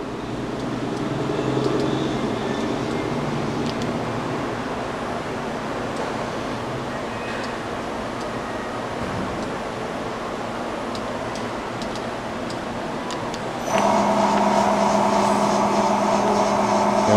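Amera Seiki MC-1624 CNC vertical machining center running with a steady mechanical hum and no loud noise from its axis feed bearings. About 14 seconds in, the spindle starts and a louder steady hum with a low tone takes over.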